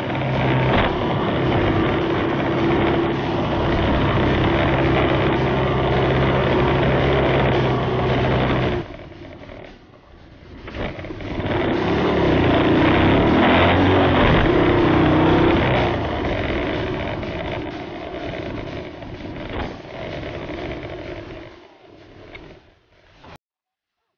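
Small moped engine running while riding, steady at first, then falling away sharply about nine seconds in. It picks up again a few seconds later with its pitch rising and falling, and fades gradually toward the end.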